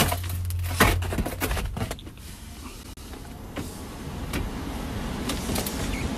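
Carrier air handler's ECM blower motor starting on a jumpered heat call and ramping up to a steady run. Sharp knocks and clicks of handling come in the first two seconds.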